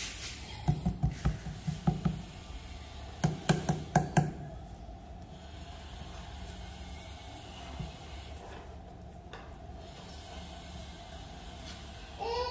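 Quick runs of light plastic clicks and knocks, about eight in the first two seconds and five more a few seconds in, from the oil cup and filler cap being handled at the oil-fill port of a Senci SC6000i inverter generator. A faint steady hum lies underneath.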